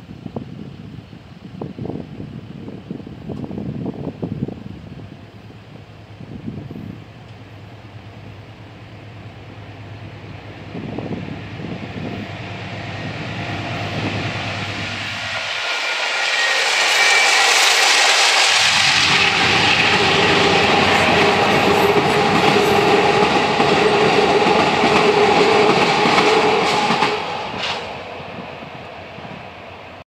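Amtrak Sunset Limited passenger train approaching and running past over the railroad bridge. Its rumble builds from about halfway, stays loud for about ten seconds with the clatter of the cars, then fades near the end.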